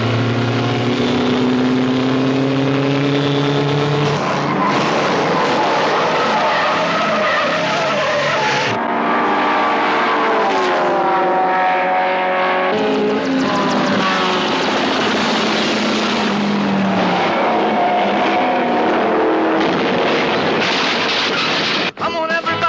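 Racing cars speeding along a road, their engines revving in pitches that rise and fall as they go through the gears and pass by, with tyres skidding.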